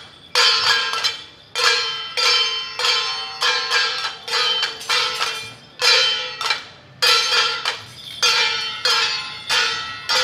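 Metal percussion of Taiwanese temple-procession music: bright ringing strikes in an uneven rhythm, about two to three a second, each ringing briefly before the next.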